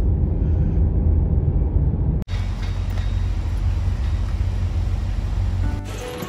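Low, steady road rumble inside a moving car. About two seconds in it cuts abruptly to a steady, hissier outdoor ambience.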